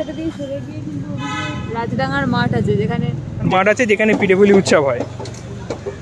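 A vehicle horn sounds once, a steady tone lasting under a second, about a second in, over the running engine of a passing vehicle in street traffic.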